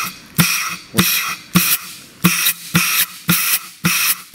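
Compressed-air blow gun pulsed into the feed passage of clutch pack one in a 09G six-speed automatic transmission. About twice a second there is a short hiss of air, each with a sharp thump as the clutch piston claps on. This is the air test that shows the pack's piston applies and holds air.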